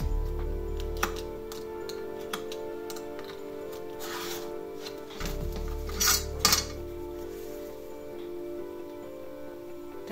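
Background music, over which a snap-off utility knife and steel ruler click and clink as they are handled on leather and a cutting mat. Short scraping cuts come about four seconds in and twice more around six seconds in, the last pair the loudest sounds.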